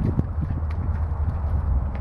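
Hooves of a pen of black beef calves stepping and shuffling on wet, muddy concrete: a few irregular knocks, most near the start, over a steady low rumble.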